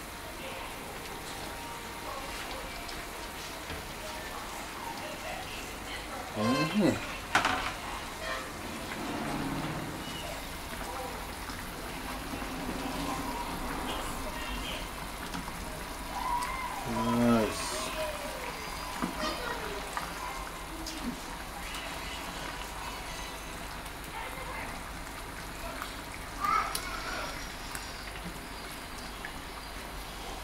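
Fish simmering in a seasoned broth in a frying pan: a steady sizzle and bubble. A few brief louder sounds stand out about six seconds in, around seventeen seconds and near the end, as the fish are moved about with a spatula.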